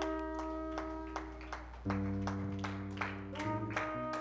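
Live worship band playing a slow instrumental passage: sustained chords over a bass line that steps to new notes about two seconds in and again shortly before the end, with light, evenly spaced percussive strikes about three a second.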